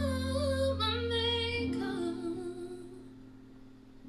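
A woman singing a held, wavering note over sustained chords from a digital keyboard; her voice stops about a second and a half in, and the keyboard chord fades away slowly toward the end.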